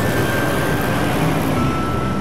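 Street traffic noise from passing cars and motorbikes, steady throughout, under background music of long held tones that step to a lower note about one and a half seconds in.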